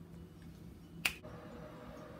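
Quiet kitchen room tone with one sharp click about a second in.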